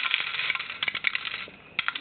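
Small plastic Lego pieces (the set's yellow 'wheat') being dropped into a plastic Lego silo: a dense clicking rattle that thins out after about a second, with a few more clicks near the end.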